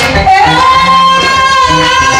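Live band music with a woman singing, holding one long note from about half a second in, over a bass line.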